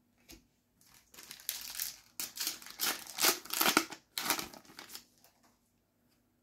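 Foil wrapper of a Panini FIFA 365 Adrenalyn XL card sachet crinkling as it is torn open and the cards are slid out, in a run of irregular noisy bursts from about one to five seconds in.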